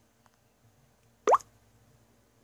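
A smartphone's volume-adjust feedback sound, one short drop-like blip rising in pitch about a second in, played as the ringtone volume is changed.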